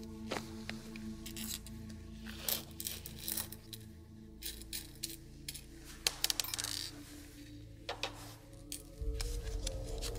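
Small metal screws and nuts clicking and ticking as they are tipped out of a plastic bag onto a work board, with the bag rustling, over steady background music.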